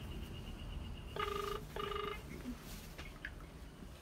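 Ringback tone of an outgoing mobile phone call, heard through the phone's speaker: a double ring of two short beeps about a second in, while the call rings at the other end unanswered.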